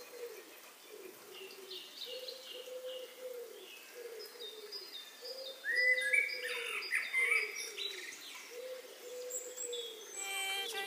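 Birdsong opening a song, before the music comes in: a steady run of low hooting calls, with higher chirps over them that grow busier and louder about halfway through.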